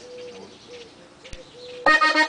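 A short, quiet pause holding only a faint, steady low tone and a single click, then a diatonic button accordion and a bajo sexto come in loudly together near the end as a norteño huapango starts.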